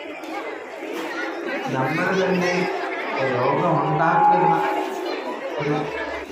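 A man speaking into a microphone over a public-address loudspeaker, in phrases, with crowd chatter behind.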